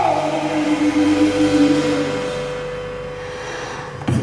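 Live blues band's held notes ringing out and slowly fading after the sung line ends: two steady tones, one low and one higher, with no singing.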